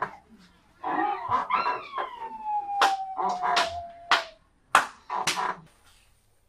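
A high voice in a long, drawn-out cry that slides slowly down in pitch, followed by several short, sharp smacks.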